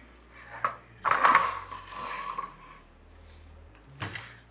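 A 3D printer's metal power-supply box being handled and slid out on a wooden desk: a click, then about a second and a half of scraping with a few knocks.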